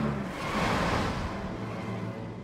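Car sound effect from the anime soundtrack: a low engine hum, with a rushing swell of noise about half a second in as the car makes a turn, settling back to a lower hum.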